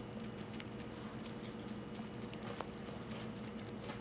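Faint, soft little clicks of a pet hedgehog chewing shredded fried chicken, over a low steady hum.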